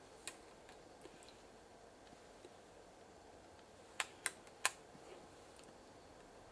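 Quiet room with a few light clicks from a TV power supply circuit board (Samsung BN44-00264C) being handled and pointed at with a pen: one faint click near the start, then three sharp clicks close together about four seconds in.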